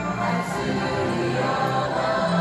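Massed school choir singing sustained, held notes over a live orchestra.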